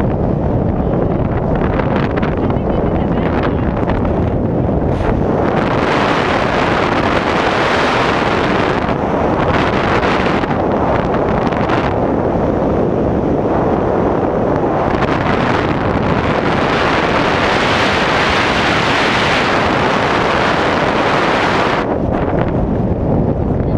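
Wind rushing over the camera microphone during a tandem parachute descent under an open canopy: a loud, steady rush whose hiss swells and eases several times.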